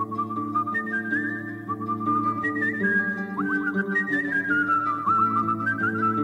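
Music: a whistled melody with quick sliding, ornamented notes, played over held lower chords.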